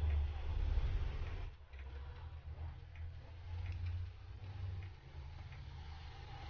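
Faint, irregular small clicks and handling noise as plastic smartphone parts are fitted and pressed together by hand, over a steady low rumble.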